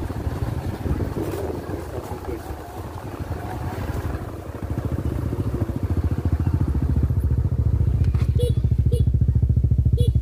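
Small motorbike engine running with a rapid low putter, growing louder from about halfway through.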